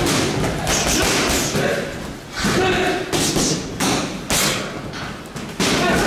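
Boxing gloves punching a heavy bag, a run of repeated thudding blows.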